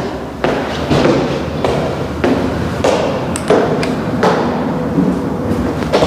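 Footsteps walking up tiled stairs, a steady step a little under twice a second.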